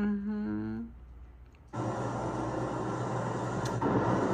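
A short hummed voice sound, then a brief lull. About two seconds in, a steady rush of heavy rain and wind from a hurricane cuts in suddenly.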